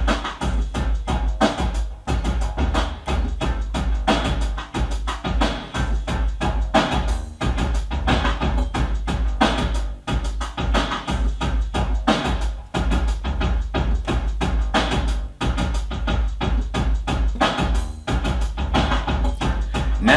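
Electronic groove with a programmed drum-machine beat from an Alesis SR-18, steady deep bass and keyboard parts sequenced over MIDI, playing without a break.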